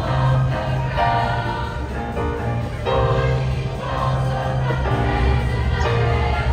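All-female high school show choir singing in harmony over instrumental accompaniment, with a bass line moving in held low notes.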